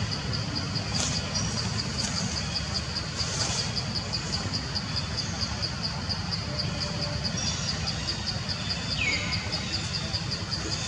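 An insect chirping steadily in a regular high pulse, about three a second, over a steady low rumble of outdoor background noise. A short falling whistle sounds once near the end.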